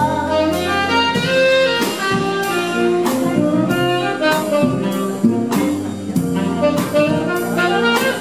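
Tenor saxophone playing an instrumental melody over electric bass and piano, with a steady beat of about two strokes a second.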